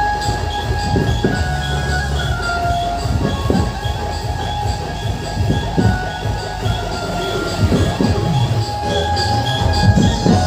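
Loud music playing through a truck-mounted DJ sound system, with a heavy bass and a steady beat of about two a second.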